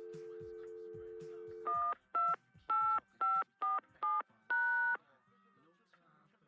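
Telephone dial tone, then seven touch-tone keys dialed in quick succession, the last beep held longer.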